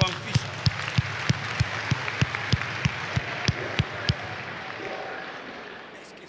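A large congregation applauding over a steady beat of loud thumps, about three a second, which stops about four seconds in; the applause then fades away.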